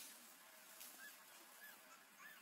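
Faint, short, high animal calls, each rising and falling in pitch, two in quick succession over near silence.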